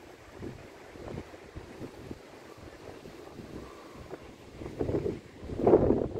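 Wind gusting across the microphone at the seashore, with irregular rumbling buffets that grow louder near the end, over the wash of breaking surf.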